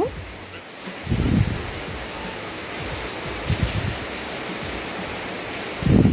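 Cashew nuts frying gently in ghee in a steel pan on a low flame, a steady low hiss, as a steel spoon stirs them, with a few dull knocks of the spoon against the pan. The nuts are just starting to brown.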